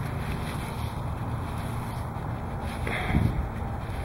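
A hand digging and scraping through loose wood-chip mulch, with steady wind noise on the microphone.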